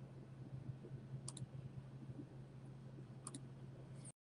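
Faint steady low hum with two faint double clicks, one about a second in and one near the end.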